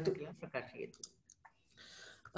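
A voice trails off at the end of a chanted line, followed by a few faint, short clicks and then a faint breathy hiss.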